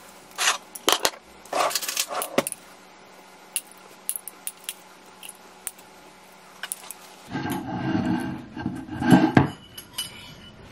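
Kitchen clatter as tacos are plated: sharp clicks and clinks of a glass jar and ceramic plates handled on a stone countertop, a quieter stretch of faint ticks, then a louder run of handling and scraping noise in the last few seconds.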